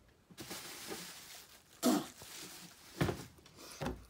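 A man breathing out hard and straining while trying to get down a mouthful of dry bird seed. He gives a short grunt about two seconds in, and there are a couple of short clicks near the end.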